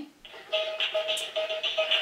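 Hallmark Sweet Dancing Bunny musical plush toy starting its electronic song about half a second in: a quick tune of short repeated notes.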